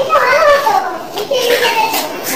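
A child's voice talking in a high pitch that rises and falls, with no clear words.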